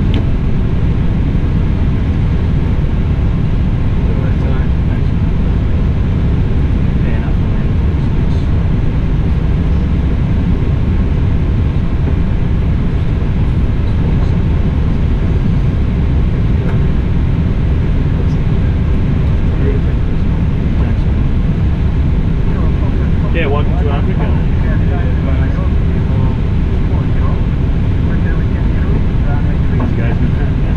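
Steady low rumble inside a jet airliner's cockpit as it taxis on idle engines, with faint voices in the last third.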